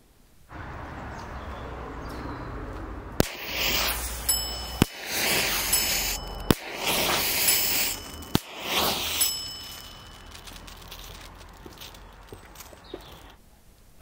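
Four electric matches (standard e-matches) fired one after another about 1.7 s apart, each a sharp pop followed by about a second of hissing flare as the igniter head burns and lights the green visco fuse pushed into its shroud.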